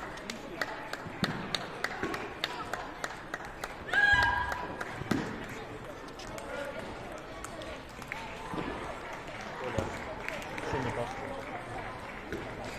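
Table tennis balls clicking irregularly off tables and bats from neighbouring tables in a large hall, over background voices. A louder, brief pitched sound comes about four seconds in.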